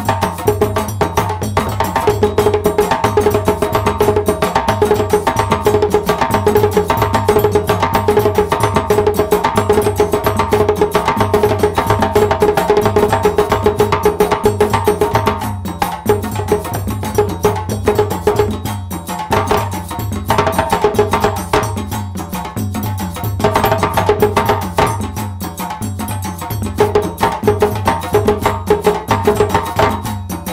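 Djembe played by hand in a fast solo, a dense run of quick strokes on the skin head, thinning out and more broken in the second half.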